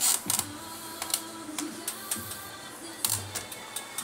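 Irregular clicks and knocks of a DTF printer's parts being handled and adjusted by hand, with the printer still switched off, over faint background music.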